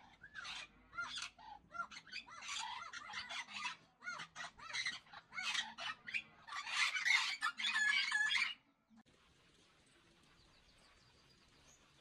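Several birds chirping and calling in quick, overlapping runs of high notes. The calling cuts off suddenly about nine seconds in, leaving faint steady background noise.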